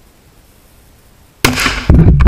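A single very loud shot from a 4-inch Smith & Wesson .500 S&W Magnum revolver about one and a half seconds in, a 350-grain hollow point blowing apart a pumpkin right beside the microphone. Before it there is only faint outdoor background.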